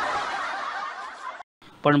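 Many people laughing together, a dense burst of crowd laughter that fades slightly and then cuts off abruptly about a second and a half in.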